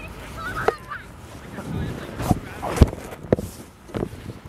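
Footsteps crunching in snow and the phone being handled, heard as a few dull thumps; the loudest comes about three quarters of the way through. A faint, wavering high call comes in about half a second in.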